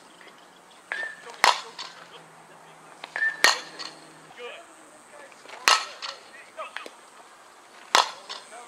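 Softball bat striking pitched balls in batting practice: four sharp cracks about two seconds apart, each with a fainter click just before it.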